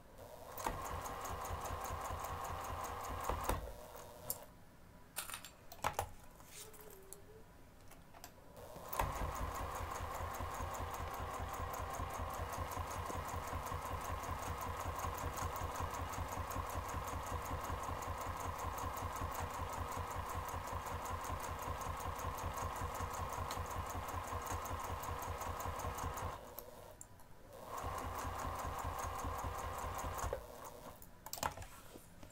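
Electric domestic sewing machine stitching through a fabric zipper panel. It runs briefly at the start and stops for a few seconds of handling clicks. It then runs steadily for about seventeen seconds, pauses for about a second, and starts stitching again near the end.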